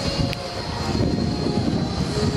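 Steady low rumble of wind buffeting the microphone over street noise, with a faint steady high whine and a single short click about a third of a second in.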